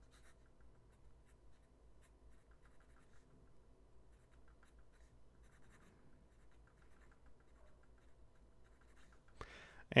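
Medium steel nib of a Diplomat Magnum fountain pen writing cursive on Rhodia pad paper: faint, light scratching in many short strokes.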